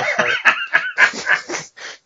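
Men laughing in loud, choppy bursts that die away near the end.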